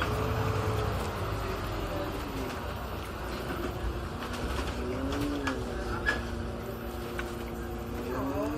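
City bus engine and drivetrain heard from inside the cabin while moving: a steady low rumble with a whine whose pitch sinks, rises and falls as the bus changes speed. A sharp knock about six seconds in.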